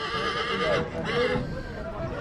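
A horse whinnying: a loud, high, quavering call of just under a second, then a shorter second call right after it.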